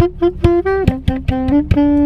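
Brass band with drums playing inside a car: short held horn notes that step down in pitch about a second in, punctuated by sharp drum hits.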